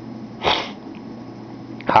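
A man takes one short, sharp breath, a brief hiss about half a second in, over a steady low room hum.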